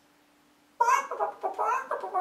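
A man imitating a chicken with his voice: a run of clucking calls starting just under a second in.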